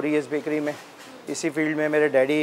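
A man speaking, with a brief pause about a second in.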